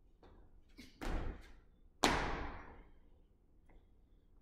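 Two heavy landing thuds of athletic shoes on a weight-room floor about a second apart, the second louder, each followed by a short room echo: the landing of a lateral bound, then the landing of a vertical jump. A few light footfalls come before and after.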